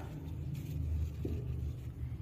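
Low, steady background rumble with no clear event on top of it.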